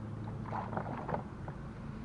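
Light clicks and knocks of fishing rod and gear being handled in a small boat, bunched about half a second to a second in, over a steady low hum.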